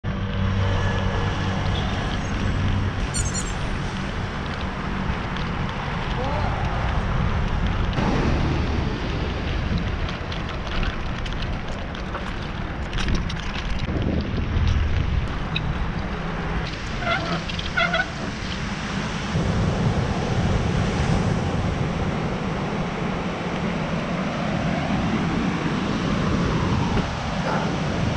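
Ocean surf washing on a beach, with wind buffeting the microphone: a steady rush of noise with a heavy low rumble.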